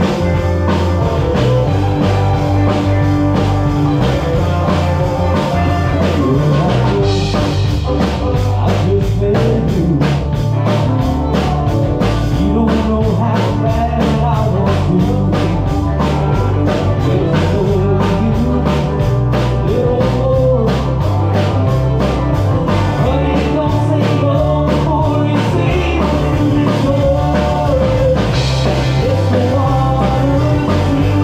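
Live band playing through a stage PA: electric guitars, bass guitar, drum kit and fiddle. The drums' cymbals keep a steady beat from about seven seconds in.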